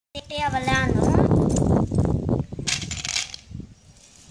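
Voices, mostly speech: a short spoken phrase, then a stretch of rough, noisy sound from about a second in, and a brief sharp noise near the end. The glass bangle pieces being picked are not clearly heard.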